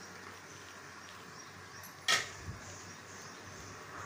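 Faint steady sizzle of thick besan curry (pithla) cooking in a pan on the gas stove, with one sharp knock about two seconds in and a lighter one just after.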